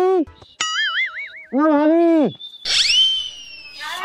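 Edited-in comedy sound effects: a wobbling boing tone, then a high whistle that shoots up and slides slowly down. A man's drawn-out shout comes between them.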